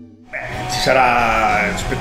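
A person's voice, drawn out and wavering, starting about a third of a second in.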